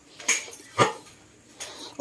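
A dog barking: two short, sharp barks about half a second apart, with a fainter sound near the end.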